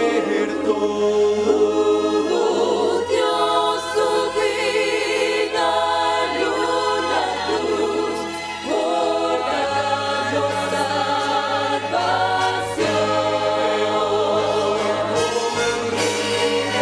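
Mixed choir of men and women singing into microphones, over low sustained accompaniment notes that shift pitch a few times.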